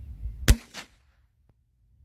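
A single shot from a .22 calibre Merlin rifle: one sharp crack about half a second in, followed by a fainter second crack.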